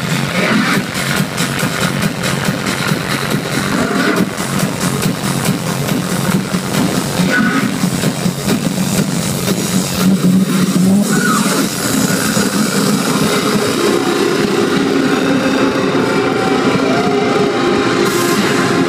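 Loud electronic dance music from a club sound system during a live DJ set. Held notes come in over the last few seconds.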